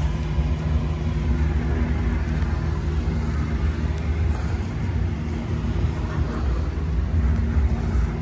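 An engine idling steadily: a low, even rumble that holds one speed without revving.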